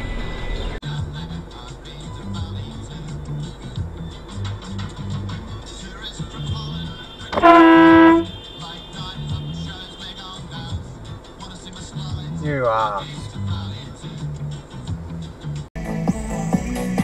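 A car horn sounds once, one loud steady blast of under a second near the middle, over background music with a steady beat.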